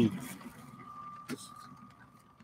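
Faint crinkling of a clear plastic bag of LEGO parts being handled, with one sharp click a little over a second in. A faint steady high tone sits underneath.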